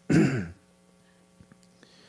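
A man clears his throat once, briefly, right at the start, picked up close on a microphone. After it there is only faint room tone with a few small clicks.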